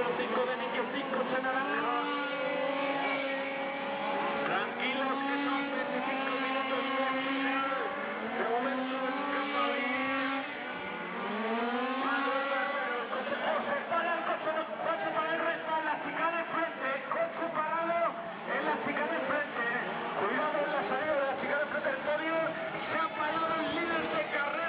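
Several radio-controlled Mini Cooper 4WD race cars with small petrol two-stroke engines revving and easing off as they lap, their whining pitch rising and falling and overlapping.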